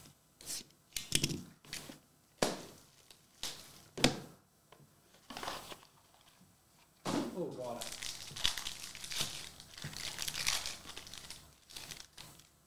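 Plastic shrink-wrap on a trading card box is cut and torn off, giving a string of short, sharp crinkles over the first few seconds. Later comes a longer run of steady crinkling as the plastic wrapper of a Panini Court Kings card pack is torn open.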